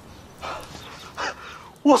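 A man's voice: two faint, short vocal sounds, one falling in pitch, then loud speech beginning just before the end.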